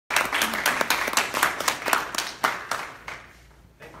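An audience clapping, the applause thinning out and dying away about three seconds in.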